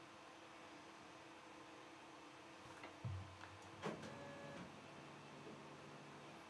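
Near silence: quiet room tone, with a soft low thump about three seconds in and a short click just before four, then a faint low hum.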